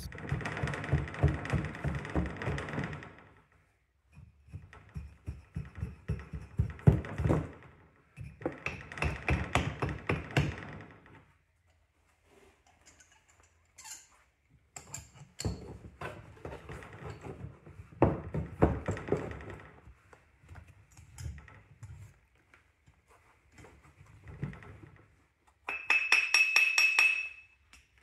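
Packed casting sand being chipped and scraped away from a freshly cast brass piece, in bursts of rapid strokes two to three seconds long with short pauses between. Near the end comes a brief metallic ring.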